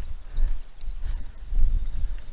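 Garden leveling rake, its head turned over onto its flat back, pushed and pulled through loose soil to smooth it: a series of dull scraping strokes.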